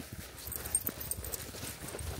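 A corgi trotting on a leash on asphalt: irregular light clicks and taps of its claws and steps on the pavement, mixed with the walker's footsteps.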